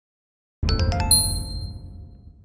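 Logo sting: after a brief silence, a low boom with a quick run of bright, ringing chime notes about half a second in, fading away.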